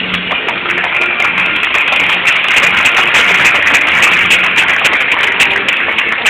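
An audience clapping over background music. The applause builds over the first couple of seconds, is fullest in the middle, and eases slightly near the end.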